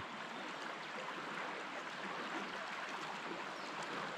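Small creek's water running fast over shallows, a steady rushing.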